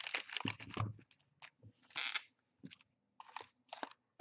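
Foil trading-card packets crinkling and rustling as a stack of them is handled, in a dense run at first and then in short separate bursts.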